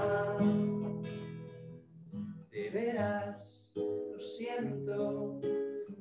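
Nylon-string classical guitar strummed with a man singing: a long held note fades out over the first two seconds, then strummed chords follow with short sung phrases between brief pauses.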